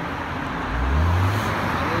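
A tuner car's engine revving as it passes: a low rumble that rises in pitch about a second in, over steady street traffic noise.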